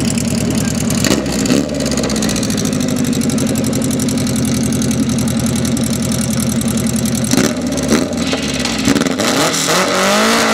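Formula racing car's engine running loud and steady at idle, with short throttle blips about a second in and again a couple of seconds before the end. It revs up with rising pitch near the end as the car launches off the start line.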